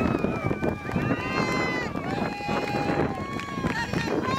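Several high-pitched voices cheering and yelling in long held shouts, overlapping one another, as a team runs onto the field.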